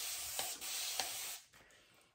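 Wet shaving on a lathered face: a steady scratchy, rubbing hiss with a few faint ticks that stops about a second and a half in.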